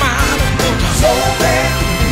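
Soul song played by a full band, with a steady drumbeat and bass under a singing voice.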